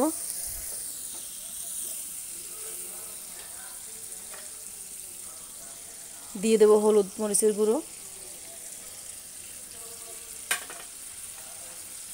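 Ginger-garlic-onion paste with cumin and bay leaf sizzling steadily in hot oil in a kadai as the masala is fried and stirred with a spatula. A brief voice comes in about six seconds in, and there is a single sharp tap about ten seconds in.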